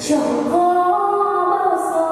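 A young woman singing a Vietnamese song into a microphone over backing music, holding long notes.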